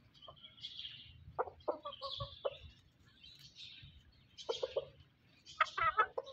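Chickens clucking in short runs: several clucks about a second and a half in, a few more at about four and a half seconds, and a longer, higher squawk just before the end. Faint high-pitched chirping goes on behind them.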